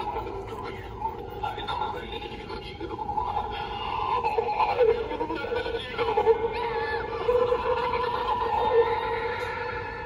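Pennywise door-knocker Halloween prop, set off by its try-me button, playing its recorded character voice through a small built-in speaker.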